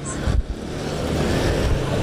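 Steady rushing noise like road traffic going by, with a couple of low thumps in the first half second.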